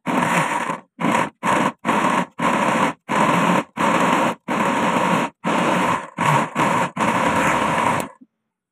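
Electric blender running in a string of about a dozen short bursts, each a fraction of a second to a second long, stopping and starting with silent gaps between. A steady motor whine sits under the churning of a thick banana mixture in the jar.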